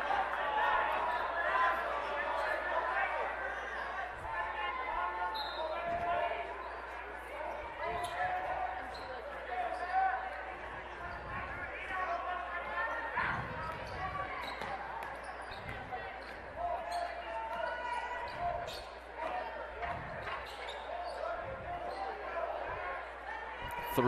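A basketball being dribbled on a gym floor, single bounces scattered through, under a steady murmur of crowd voices in a large gym.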